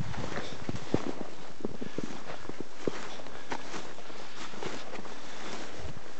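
Footsteps through snow and heather on open moorland, an irregular stride of roughly two steps a second over a steady hiss.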